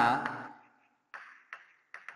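Chalk writing on a blackboard: three short, sharp strokes of the chalk against the board in the second half, after a spoken word at the start.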